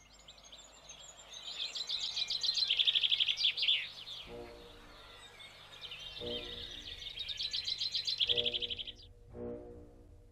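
Songbirds singing rapid high trills in two long bursts. Low held musical notes come in about four seconds in and swell in pulses beneath the birdsong.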